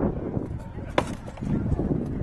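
A single sharp crack about a second in: a rattan sword blow landing in armoured SCA heavy combat.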